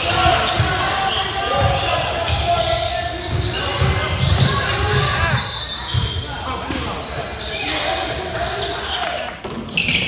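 Live game sound of a basketball game on a hardwood gym floor: the ball bouncing and indistinct voices from players and spectators, echoing in the large hall. The sound breaks off briefly near the end.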